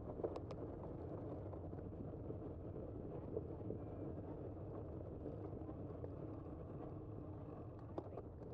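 Steady low rumble of a bicycle rolling over rough, patched asphalt, with wind on the bike camera's microphone, and a couple of sharp clicks about half a second in.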